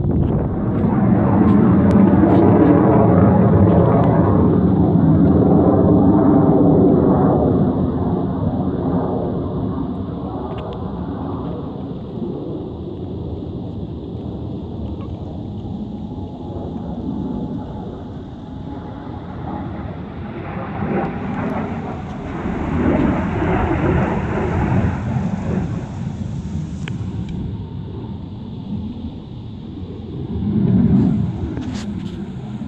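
Blue Angels jet flying over: a loud jet roar that swells in the first few seconds and slowly fades, then a second, weaker swell of jet noise around twenty to twenty-five seconds in.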